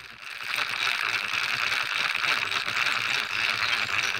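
River water rushing over rocks, a steady hiss that swells up about half a second in and then holds.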